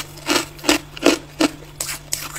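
Powdery freezer frost crunching in five rasping strokes, about two and a half a second.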